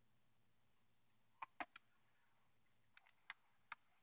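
Near silence broken by faint, sharp plastic clicks from a JVC portable CD player being handled: three quick clicks about a second and a half in, then three more near the end as its lid latch is released and the lid opens.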